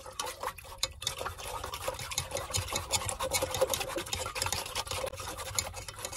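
A wooden stick stirring water in a metal pot: quick, irregular splashing with light ticks of the stick against the pot.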